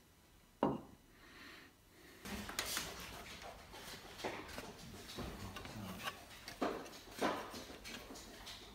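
A single sharp knock of wood on a wooden workbench about half a second in. From about two seconds on come irregular knocks and rubbing of wood and hand tools being handled on the bench.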